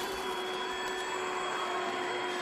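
A steady hissing drone with a few faint held tones, unchanging in level throughout.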